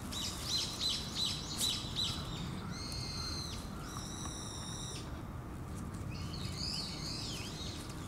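A bird calling. First comes a run of about six short, high notes, then two long, even, high notes, and a warbling phrase near the end.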